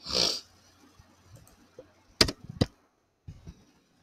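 Two sharp clicks about half a second apart, a little over two seconds in, from computer input while text is pasted into a document, after a short breathy hiss at the very start.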